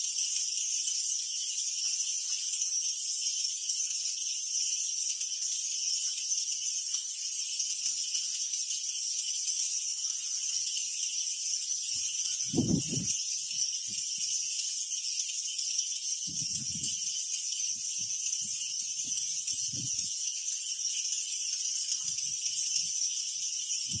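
Steady, high-pitched buzzing of a tropical insect chorus that runs without a break. A few soft low thuds come through it, the loudest about halfway through.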